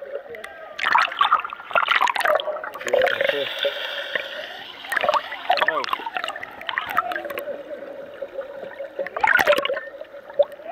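Water sloshing and gurgling around a camera held just under the surface, with muffled voices from above the water coming in short bursts. A steady hum runs under the second half.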